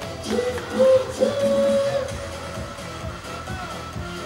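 Baseball cheer music playing loudly over stadium loudspeakers, with a voice carrying a long held line over it in the first half.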